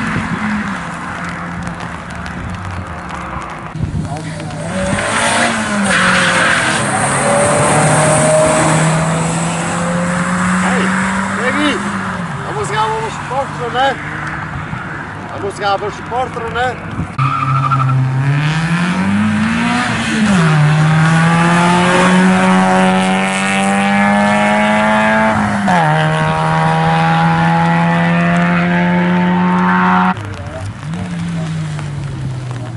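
Rally car engines revving hard and climbing through the gears on a special stage. The engine note rises and drops back at each shift, with a strong run of shifts from a little past halfway to the end.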